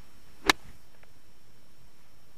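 Golf club striking a golf ball on a short pitch shot off turf: one sharp click about half a second in.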